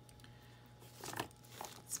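Tape being handled and pulled from its roll: brief crinkling, tearing sounds about a second in, then a short rustle near the end.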